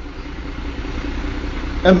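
A steady low hum with an even hiss underneath, engine-like in character, fills a pause in a man's speech; his voice comes back just before the end.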